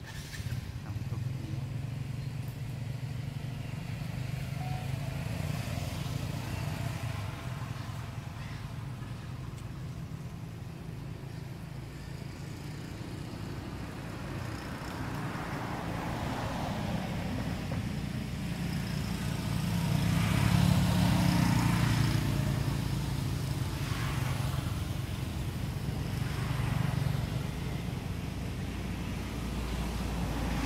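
Low, steady engine hum that swells louder about two-thirds of the way through.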